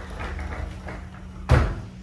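Wooden closet door being slid open, rumbling low, then a single loud knock about one and a half seconds in.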